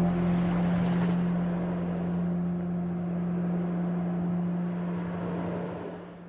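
Ambient meditation music ending on a sustained low drone under a soft, hissing wash, fading out near the end.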